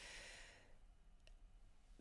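Near silence in a small room: a woman's soft breath during the first half-second or so, then a single faint click a little past a second in.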